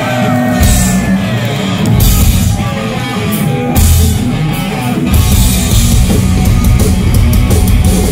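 Live punk rock band with electric guitars, bass and drum kit playing the opening of a song: heavy accented hits about every second and a half, then the full band playing steadily from about five seconds in.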